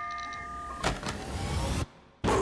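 Trailer sound design: steady electronic tones and beeps over a low rumble, then a rushing whoosh that swells about a second in and cuts off suddenly just before the end.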